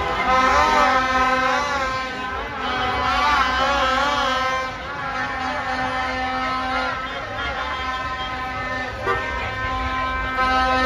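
Several car horns held and honking together in a slow street procession, the sound of a celebration. Over the first few seconds a wavering tone rises and falls repeatedly above the steady horns.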